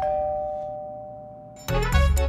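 Electronic doorbell chime ringing a two-note ding-dong, high then lower, the tones fading away. Background music with percussive hits comes in near the end.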